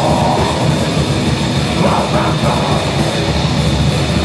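A rock band playing live at full volume, with electric guitar and a drum kit running steadily throughout.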